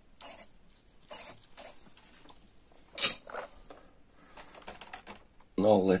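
A few scattered light plastic clicks and taps, the sharpest about three seconds in, with a quick run of faint ticks near the end, from the RC crawler and its transmitter being handled and switched on the bench.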